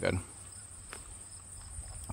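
Crickets trilling outdoors: a steady, thin, high-pitched drone under an otherwise quiet moment.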